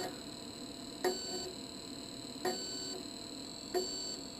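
Monoprice MP Select Mini 3D printer with a faint steady hum, broken by three short clicks, each followed by a brief tone lasting under half a second: about a second in, near the middle and near the end.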